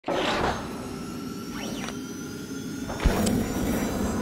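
Intro sting for an animated logo: a whoosh at the start, a swooping tone in the middle, and a low hit about three seconds in, over faint steady tones.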